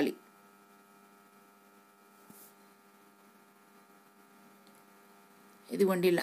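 Faint, steady electrical hum made of several constant tones, with no stirring or cooking sounds standing out; a voice starts again near the end.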